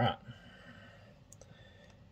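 A few faint clicks and handling noise as a phone camera is moved and set down to point at the table.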